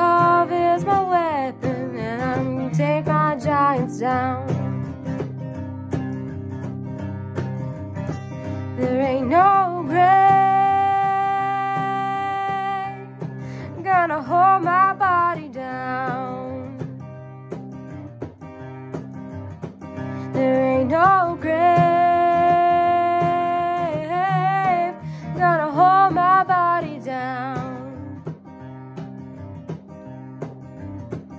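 Acoustic guitar strumming with a woman's voice singing wordless, drawn-out phrases with vibrato, holding long notes about ten and twenty-one seconds in.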